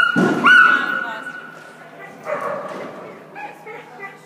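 A dog barking in high, drawn-out yips: two loud calls right at the start, the second held for about a second, and more barking about two seconds in.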